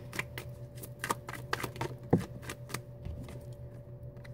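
A tarot deck being shuffled by hand: a quick, irregular run of light card clicks and slaps as the cards fall from hand to hand.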